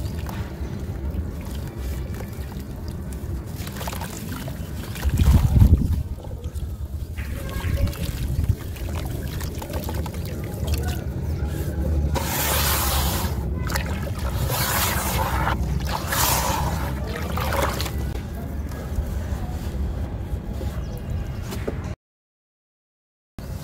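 Dry, dusty chunks of sand and clay crumbled by hand into a plastic tub of water, with a heavy thump about five seconds in. About halfway through, hands swish through the muddy water in three splashy strokes.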